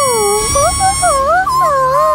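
Cartoon character's voice whimpering in pain after a wax strip is ripped off, a string of wavering whines that slide up and down in pitch. A steady high tone underneath stops about halfway through.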